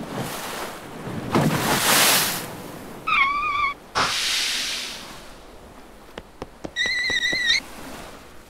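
Cartoon sound effects of waves washing in, in three swells, with two short wavering animal cries, the second higher than the first, and a few light clicks just before the second cry.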